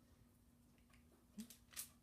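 Near silence: room tone with a faint steady hum, and a couple of faint clicks near the end.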